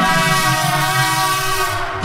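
A single steady, horn-like chord held for about two seconds, thinning in its upper notes near the end.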